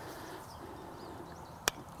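A single sharp click about one and a half seconds in, over faint background. It is the sliding ring of a Wolf River Coil SB1000 loading coil detenting down one turn of the coil while it is tuned for 40 meters.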